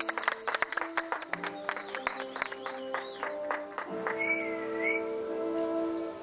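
A small group of people clapping by hand over background music of long held notes; the claps thin out and stop about halfway through, leaving the music.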